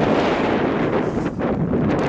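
Wind buffeting the camera's microphone: a loud, steady, low rumble of noise.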